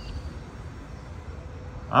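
Steady low background rumble with a faint steady hum above it; no distinct event stands out.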